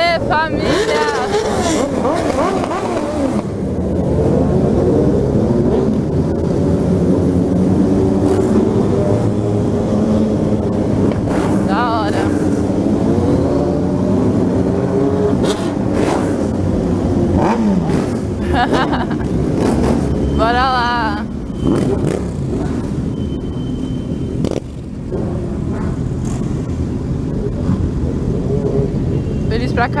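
Several motorcycle engines running at low speed in a group, the nearest being the rider's own Yamaha XJ6 inline-four, the pitch rising and falling as throttles open and close. Voices call out now and then.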